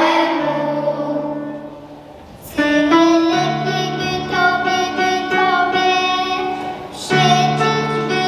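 Young children singing a Polish Christmas carol (kolęda) in unison over an instrumental accompaniment with sustained bass notes. The music drops off about two seconds in and comes back in strongly half a second later, with another short break near the end.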